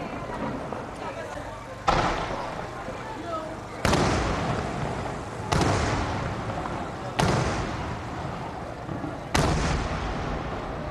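Aerial cylinder firework shells bursting overhead: five sharp bangs spread over about eight seconds, each followed by a long rolling echo.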